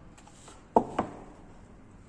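Two sharp knocks about a quarter second apart, a hot glue gun being set down on a wooden table.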